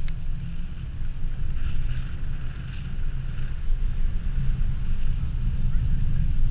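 Wind buffeting the microphone of a camera on a mountain bike coasting downhill, a steady low rumble that rises and falls, with a short click right at the start.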